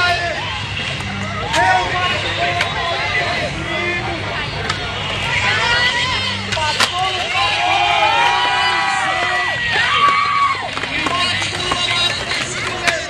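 Skateboard wheels rolling on concrete with several sharp clacks of the board hitting the ground and obstacles, the loudest about seven seconds in, over a crowd's chatter and shouts.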